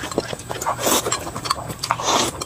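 Fast, wet eating sounds of noodles being slurped and chewed, with short slurps and a quick run of sharp lip-smacking clicks.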